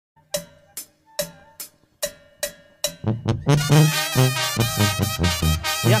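Mexican banda brass band starting a song: about three seconds of sharp separate drum strikes, a little over two a second, then the full band comes in with brass, a low bass line and drums.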